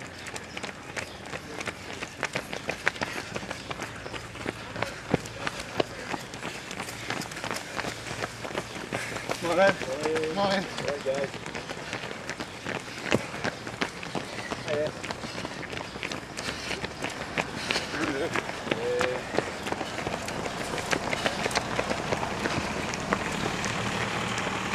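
Footsteps of many runners passing at a jog on a paved path: a dense, irregular patter of footfalls, with brief voices about ten seconds in.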